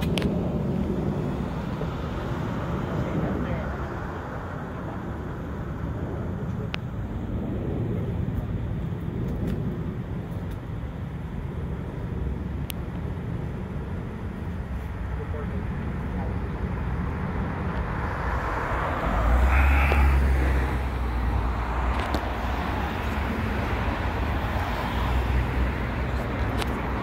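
Road traffic going by steadily, with a louder vehicle passing about three-quarters of the way through.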